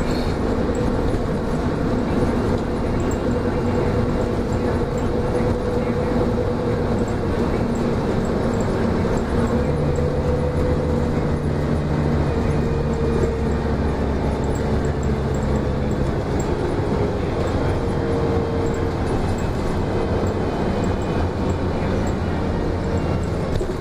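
Interior noise of a 30-foot 2004 Gillig Low Floor transit bus under way: engine hum and road noise. A steadier low engine drone comes through for several seconds midway.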